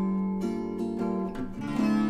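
Sped-up acoustic guitar music: plucked chords ringing on, with a new chord struck near the end.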